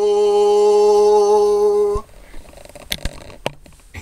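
Unaccompanied man's singing voice holding the long final note of a folk song steady for about two seconds, then stopping abruptly. After that there are only a couple of faint knocks.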